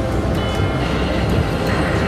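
Vampire's Embrace slot machine playing its game music and reel sounds while the reels spin and land, over a steady low rumble. A short steady tone sounds about half a second in, with a few light clicks.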